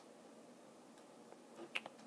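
Near silence with faint room tone, broken by two or three brief, faint clicks near the end.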